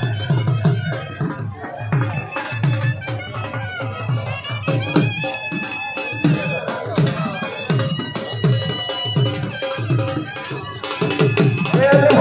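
Traditional folk music: a drum beats a steady, quick rhythm while a melody is held above it, growing louder near the end.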